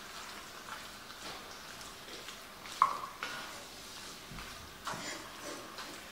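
Wooden spatula stirring chunks of beef with spices and creamed coconut in a Dutch oven, with soft scrapes and clicks over a faint frying sizzle. There is one sharper knock on the pot about three seconds in.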